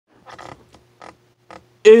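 A few faint, short scuffs and creaks, then a man's voice starts loudly near the end in a drawn-out announcer's tone: "It's the wrestling comedy show."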